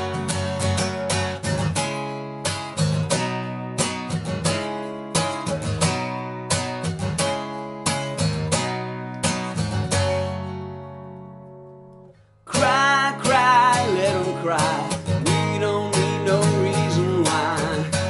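Steel-string acoustic guitar strummed in a steady rhythmic pattern, then a last chord left to ring and fade away around ten to twelve seconds in. After a brief pause the strumming comes back louder, with a singing voice over it.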